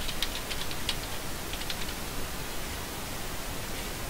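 Steady background hiss with a few faint, short clicks in the first two seconds, from a computer being operated with keyboard and mouse.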